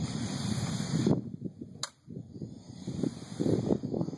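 A single sharp click just under two seconds in as the trigger of a UTAS UTS-15 bullpup shotgun is pulled and the gun does not fire: the shell gets no primer strike, the misfire fault of this early-production gun. A low rumbling noise runs underneath.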